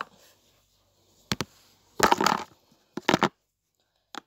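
Small plastic lip balm tubes and pots handled close to the microphone: two quick clicks a little over a second in, a louder clatter at about two seconds, and another short clatter around three seconds.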